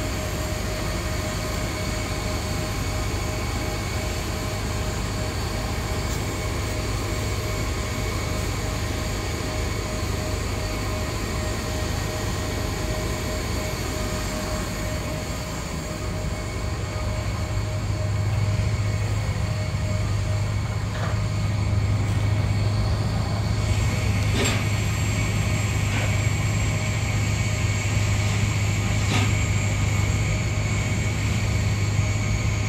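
Steady mechanical drone of airport ramp machinery, with several high steady whines over it; a low hum grows louder a little past halfway, and a few faint clicks come near the end.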